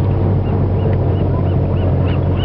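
A gull calling in a quick series of short, even notes, about three a second, starting about half a second in, over the steady low hum of the whale-watching boat's engine.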